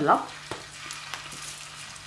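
Minced-meat kofta sizzling as it fries in hot oil in a frying pan: a steady light crackle with a few sharp pops.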